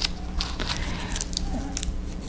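Tissue paper rustling and crinkling as it is folded and creased by hand, a run of small irregular crackles.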